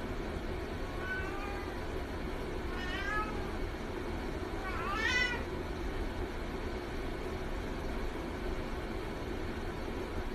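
Domestic cat meowing three times, about two seconds apart, the last call the loudest, rising and then falling in pitch. A steady low hum runs underneath.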